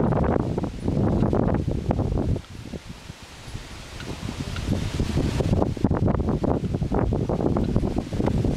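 Wind buffeting the microphone: a rough, gusting low rumble that drops away briefly about two and a half seconds in, then picks up again.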